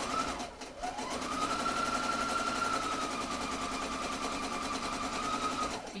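Electric domestic sewing machine stitching at its largest stitch length with loosened thread tension, so the fabric gathers into a ruffle. The motor starts briefly, then speeds up about a second in, runs steadily, and stops just before the end.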